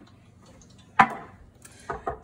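A single sharp knock on a hard kitchen surface, like something set down on the counter, about a second in, with a short ringing tail. A fainter tap comes just before the end, over quiet kitchen room tone.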